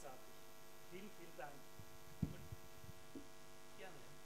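Steady electrical mains hum from the sound system. About two seconds in there is a sharp knock and then a smaller one, typical of a microphone being handled, with faint murmured voices in the room.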